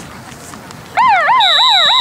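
Electronic warbling siren-like signal from the field scoreboard, starting suddenly and loudly about a second in and sweeping up and down about three to four times a second, with a steady high tone joining it; it signals the end of the third quarter.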